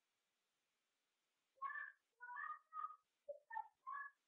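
An animal's short pitched calls, several in quick succession, starting about a second and a half in after near silence.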